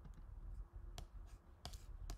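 A few faint computer mouse clicks, the clearest about halfway through and a quick pair of clicks near the end.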